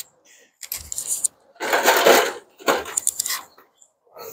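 Thin disposable aluminum foil tray being handled, crinkling and rattling in three short bursts, the middle one the loudest.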